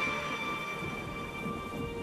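A quiet gap between two background songs: faint held notes from the end of one track linger over a low rumbling noise, before the next song begins just after.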